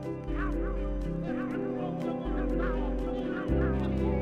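Minimal techno playing: long held bass notes and steady ticks, with a short, repeated honk-like call riding over it about three times a second.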